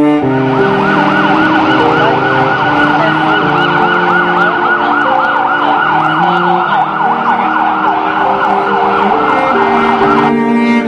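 A loud siren-like warbling tone, sweeping up and down several times a second, starting abruptly and stopping abruptly near the end, over slow held notes of bowed-string music.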